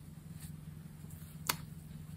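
Quiet room tone with a steady low hum, and one short, sharp click about one and a half seconds in.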